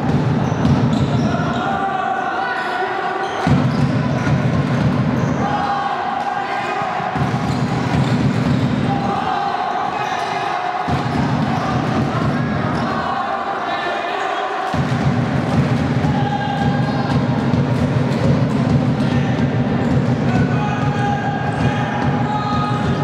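Futsal ball being kicked and bouncing on a hardwood indoor court during play, with voices of players and spectators in the hall.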